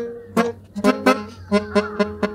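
Pianica (keyboard melodica) playing a run of short, detached notes, about six in two seconds.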